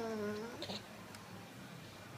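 A young child's high, drawn-out vocal sound slides down in pitch and fades out within the first half-second. A brief faint vocal sound follows, then only quiet room tone.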